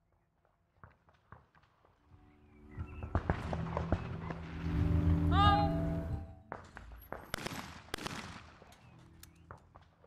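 Trap shotguns firing: two sharp shots about 0.7 seconds apart in the second half. They follow a swelling stretch of steady tones with a brief rising chirp, which is the loudest part.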